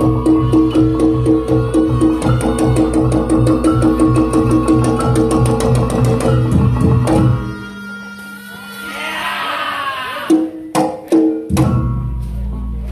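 Reog Ponorogo gamelan accompaniment playing a fast, even beat of drums and gong-chime tones, which stops about seven seconds in. After a lull with a short wavering high tone, a few sharp drum strikes come near the end and the ensemble starts up again.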